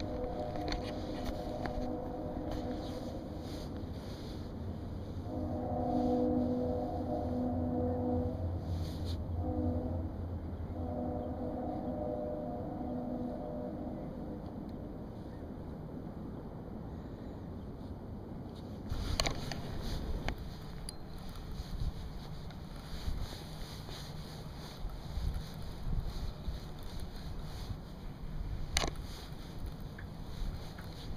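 A train horn sounding a chord in the pattern long, long, short, long, the grade-crossing signal, over a low rumble. In the second half, an even rushing noise with occasional clicks.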